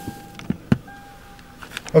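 Two sharp clicks, about half a second apart, from a camera being handled and set in place inside a car.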